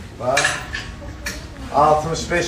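Metal clothes hangers clinking and scraping along a metal clothing rail as garments are pushed aside, with a sharp click a little past halfway.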